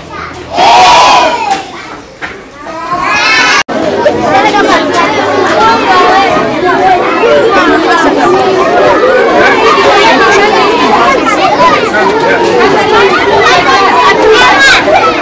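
Schoolchildren's voices: a class calling out loudly in the first few seconds, then, after an abrupt break about four seconds in, a large crowd of children talking and shouting all at once in a dense, continuous chatter.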